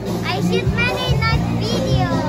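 A young child talking in a high voice over background music.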